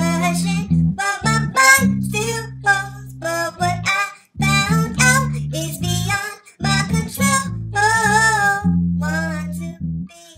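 Electric bass guitar playing sustained low notes in phrases with short breaks, with a voice singing a wavering melody over it.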